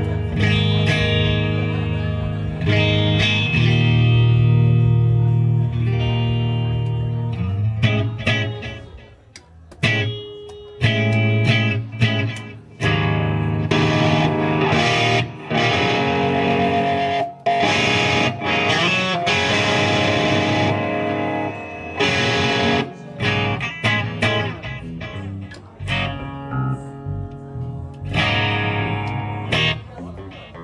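Amplified electric guitar with band instruments: sustained chords for the first several seconds, then short stop-start phrases broken by sudden drop-outs, as in a pre-set soundcheck or warm-up.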